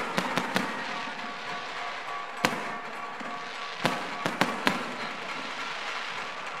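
Firecrackers going off over the steady din of a packed crowd: a handful of sharp cracks, three in quick succession at the start, the loudest about two and a half seconds in, and three more near the two-thirds mark.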